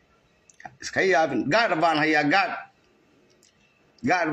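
A man's voice saying one phrase of about two seconds, with a few faint clicks just before it.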